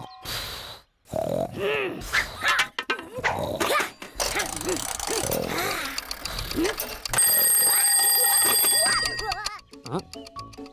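Cartoon bunny vocal sounds, then a twin-bell alarm clock rings steadily for about two seconds, starting about seven seconds in.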